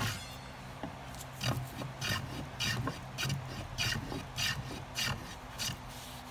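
A small hand plane, a reproduction Stanley No. 1, taking shavings off a wooden half-hull model in about ten short strokes.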